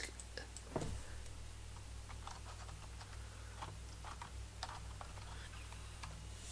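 Faint, irregular clicks of a computer keyboard and mouse, keys tapped one at a time, over a steady low hum.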